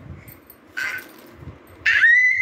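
A little girl's short high-pitched squeal about a second in, then a louder, higher squeal starting just before the end that breaks into laughter.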